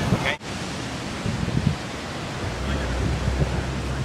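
Wind rushing over the microphone with ocean surf behind it; a low wind rumble grows stronger from about two and a half seconds in.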